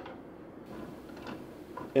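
Faint handling noise on a desktop 3D printer: a couple of soft ticks from hands on its plastic frame.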